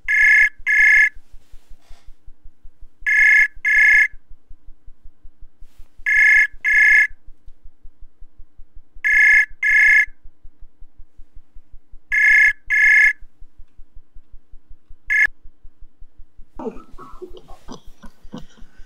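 Ringback tone of an outgoing internet call: pairs of short rings repeating about every three seconds, five pairs, then a sixth ring cut off after a moment about fifteen seconds in as the call is answered.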